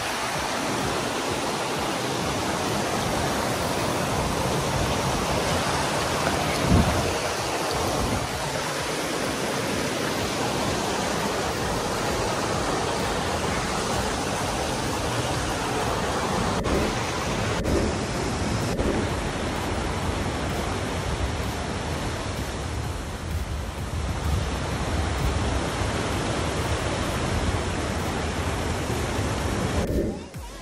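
Steady rush of water tumbling over rocks in a boulder-strewn river cascade, with a single thump about seven seconds in.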